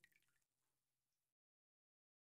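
Near silence, dropping to complete digital silence about a second and a half in.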